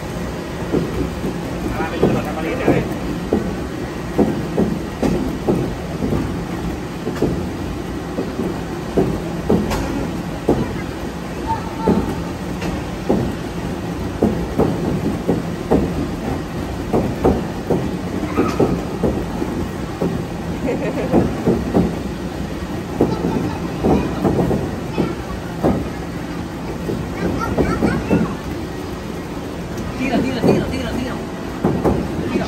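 Plastic play balls knocking and clattering again and again, over a steady rumbling background and voices.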